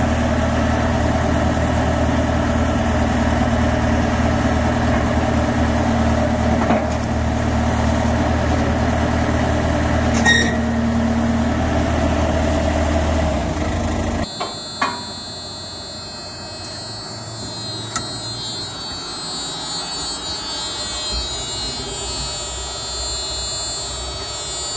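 JCB 409 ZX wheel loader's diesel engine idling steadily, a low rumble with a faint higher hum. About fourteen seconds in the engine sound stops abruptly, followed by a couple of sharp clicks and then a quieter, steady high-pitched electrical whine.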